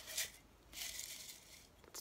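Folded paper slips rustling in a mug: a brief rattle as it is shaken, then a soft rustle about a second in as a hand rummages among them, fading out.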